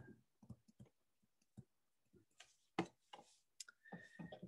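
Faint, irregular clicks and taps of a stylus pen on a tablet screen while writing by hand, the loudest a little under three seconds in.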